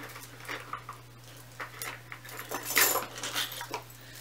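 Gold chain necklace jangling and clinking in the hand as it is picked up and handled, in a string of short light clicks and rustles that are busiest about three seconds in.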